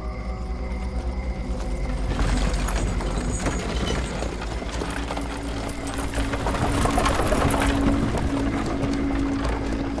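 A convoy of horse-drawn wooden wagons on the move: a dense clatter of hooves and rolling cart wheels that thickens about two seconds in, over a low sustained drone.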